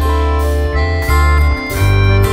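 Live band playing an instrumental passage: accordion, guitar and bass holding chords that change a few times.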